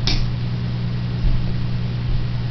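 A steady low hum, like a household appliance or fan running, with one brief light tap just after the start.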